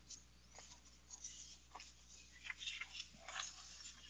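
Faint rustling and soft crackles of loose printed paper pages being leafed through and handled, in scattered short bursts.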